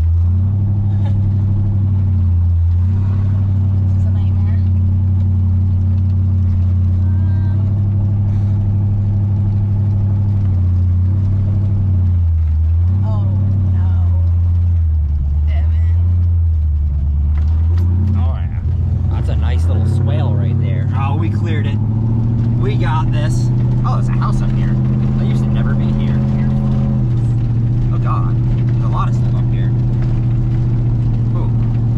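Corvette V8 engine heard from inside the open-roof cabin, pulling at low speed. Its low note rises and falls with the throttle, then settles at a higher, steadier pitch about two-thirds of the way through.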